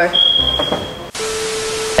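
Edited-in transition sound effects: a steady high-pitched electronic beep lasting about a second, then an abrupt burst of static-like hiss with a low steady tone under it.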